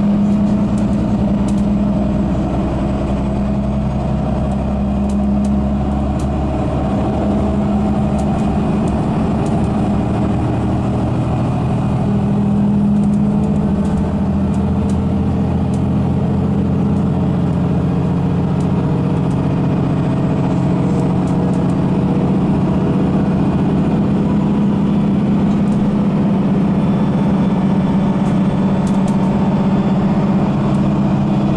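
Mercedes-Benz Citaro G articulated city bus with Voith automatic gearbox under way at a steady pace, heard from inside the passenger cabin: a continuous low engine and drivetrain drone over road noise, with faint clicks now and then.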